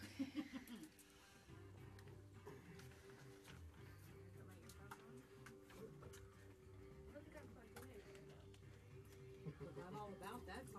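Faint music, the radio show's opening theme, playing in the studio, with a few spoken words in the first second.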